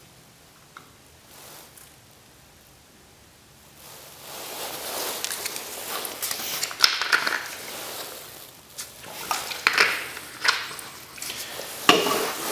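Quiet at first with one faint click, then from about four seconds in a run of irregular rustling and crunching handling noises with sharp little knocks.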